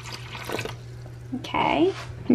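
Water poured from a plastic bottle splashing into a shallow water dish, trailing off within the first second or so. A short burst of voice follows near the end.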